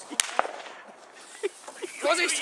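Firecrackers going off: two sharp bangs about a fifth of a second apart near the start, then a couple of fainter pops in the second half.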